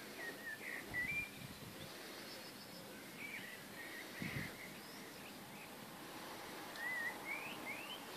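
Songbirds singing in short whistled, warbling phrases that rise and fall, three bursts of song, with a couple of soft low thumps.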